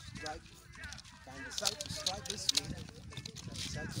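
Swishes of a wooden nunchaku swung through the air during striking practice, under a man's low, indistinct voice.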